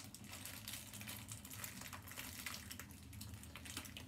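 Faint crinkling and small clicks of hands handling a small collectible toy and its packaging, in a rapid, irregular patter.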